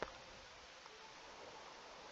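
Near silence: faint room hiss, with one short click right at the start and a fainter tick about a second in.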